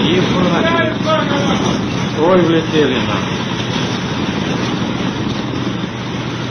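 Two short stretches of indistinct voices in the first three seconds, over a steady rushing noise with a low hum that runs on throughout.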